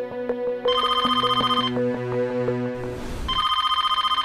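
A telephone ringing twice, a trilling ring about a second long each time, the first under a second in and the second near the end. Background music plays under it.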